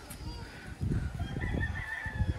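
A rooster crowing, one long call starting in the second half, over a low rumble of wind on the microphone.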